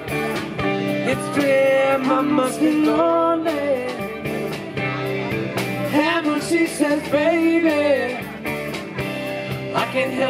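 Live rock cover band playing a song, with a lead vocalist singing over electric and acoustic guitars and drums.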